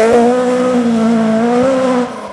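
Rally car engine held at high revs, its pitch having climbed and now holding almost level, then cutting off suddenly at the end.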